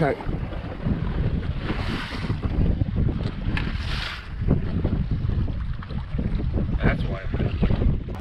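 Wind buffeting the microphone over choppy open water, with waves washing against the hull of a drifting boat; two louder rushes of noise come about two and four seconds in.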